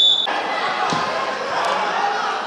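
A short, shrill whistle blast at the start, followed by the chatter and shouts of spectators and coaches in a large sports hall, with a dull thump about a second in.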